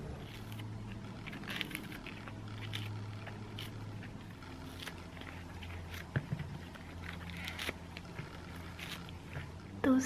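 Clusters of fresh oyster mushrooms being pulled apart by hand: gentle, moist peeling and tearing with scattered faint crackles.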